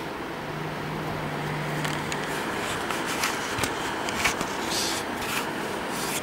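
Small DC motor of a speed-control trainer running steadily, with its speed being trimmed by the reference-voltage knob. A faint low hum early on, then a few light clicks and scrapes in the second half.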